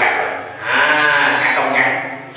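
A man's voice speaking: after a short pause, one drawn-out syllable whose pitch rises and falls.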